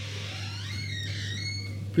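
A door creaking open: thin, squeaky tones rising and shifting in pitch for about a second, over a steady low electrical hum.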